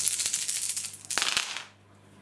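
Ten plastic six-sided dice rolled onto a wargaming table: a dense rattle for about a second, then a shorter clatter as they land and tumble, settling about a second and a half in.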